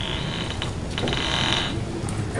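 A high-pitched mechanical creak with fast ratcheting clicks, heard twice: a longer one at the start and a shorter one about a second in.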